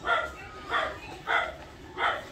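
A dog barking four times at a steady pace, about one bark every half second.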